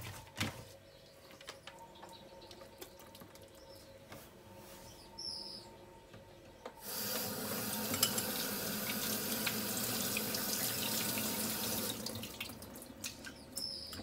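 Water running from a tap into a sink for about five seconds, starting about halfway through and cutting off near the end. Before it, only faint handling clicks.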